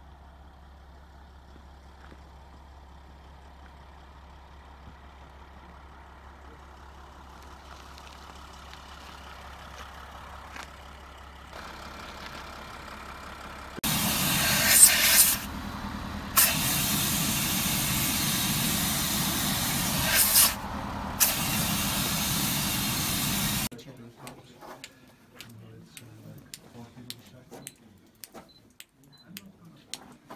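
A vehicle's low, steady engine drone, heard from inside. It cuts off about fourteen seconds in, and a loud, steady hiss takes over for about ten seconds, breaking off briefly twice. The last few seconds are quiet apart from scattered faint clicks.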